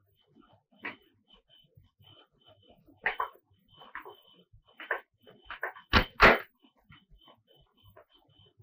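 A scattered series of short knocks and thumps, the two loudest coming close together about six seconds in, over a faint high chirp that repeats throughout.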